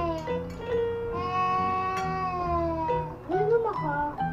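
Background music: long held, meow-like sung notes that bend slightly in pitch, over a steady low beat. A short rising-and-falling vocal sound comes about three seconds in.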